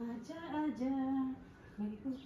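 A voice singing a slow tune softly in long held notes, with a short break before one last brief, lower note.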